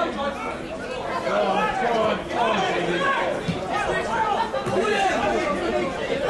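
Indistinct chatter of many overlapping voices, with no single clear speaker.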